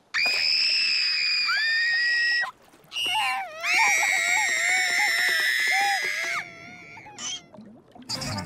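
Cartoon voices screaming: a long, high-pitched wail that stops about two and a half seconds in, then after a short break a second, longer scream with a wavering pitch that ends about six and a half seconds in.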